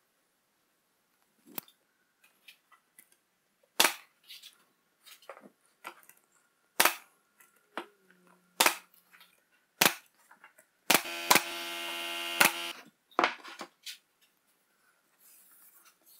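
Brad nailer driving nails into plywood: about eight sharp single shots, a second or more apart, with fainter clicks and knocks between them. Partway through, a steady whir runs for about two seconds, with two more shots during it.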